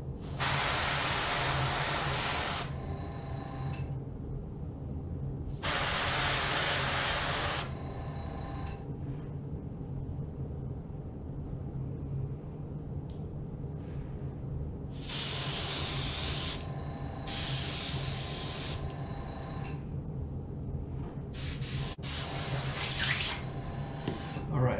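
Airbrush spraying paint in five short bursts of hiss, each one to two seconds long, over a steady low hum.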